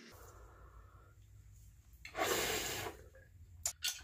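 A person exhaling hard after a bong hit: one strong breathy blast about two seconds in, lasting under a second, followed by a couple of small clicks near the end.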